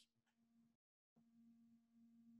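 Near silence, with only a very faint steady hum; the audio cuts out completely for about a third of a second near the middle.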